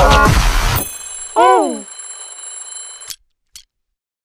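Cartoon soundtrack: loud music with a voice stops about a second in, then a short falling pitched tone sounds, over faint steady high ringing tones that cut off suddenly about three seconds in, followed by a single click.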